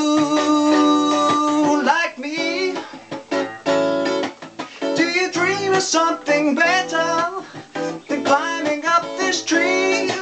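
Electric guitar strummed under a man's singing voice: a sung note held for about two seconds at the start, then more sung phrases that bend in pitch over the guitar.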